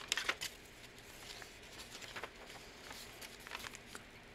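Paper pages of a handmade junk journal being turned and handled, giving soft rustles and a few crisp paper flicks, the sharpest cluster near the start.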